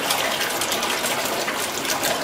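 Small electric underwater thruster running submerged in a sink of salt water, its propeller churning the water with a steady rushing splash.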